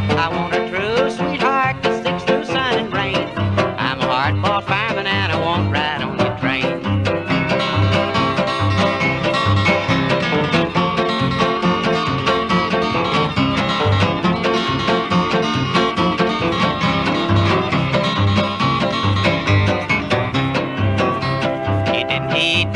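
Instrumental break of a 1955 country record: a small band with plucked string instruments plays over a steady bass beat, with no singing. The lead slides between notes in the first few seconds.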